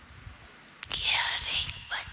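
A woman's slow, breathy speech into a microphone. The first second is hushed, then a loud hissing, whispery stretch comes in about a second in.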